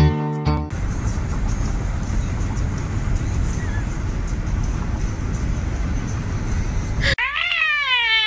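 Wind rushing and buffeting the microphone from a moving car's open window, after a moment of strummed guitar music at the start. About seven seconds in, a cat gives a long meow that rises and falls.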